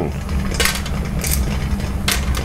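Two light metallic clinks, about a second apart, as metal tongs knock against clam shells and the steel pot while opened clams are picked out, over a steady low kitchen hum.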